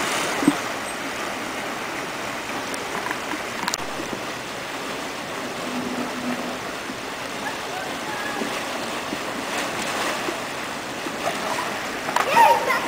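Water running down a pool slide and pouring into the pool: a steady rushing.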